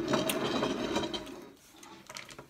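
A plate with a fork on it scraping and rattling across a table as it is pushed aside, a gritty grating that fades out about one and a half seconds in.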